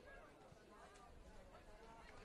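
Near silence, with faint distant voices from around the pitch, players and onlookers calling, over quiet outdoor ambience.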